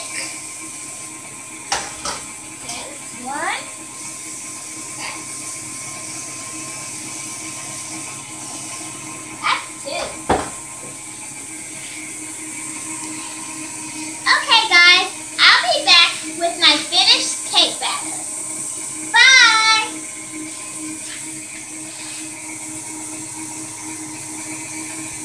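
A girl's voice in short bursts of talk or sing-song near the end, over a steady background hiss, with a few sharp knocks and clicks of kitchenware earlier on.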